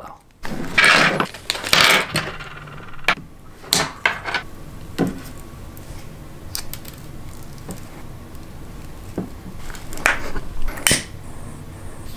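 Hands handling battery cables, heat-shrink tubing and small metal ring lugs: a rustle in the first couple of seconds, then scattered light clicks and clinks.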